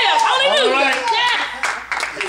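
Hand claps, several quick ones in the second half, over a preacher's loud, drawn-out exclamations.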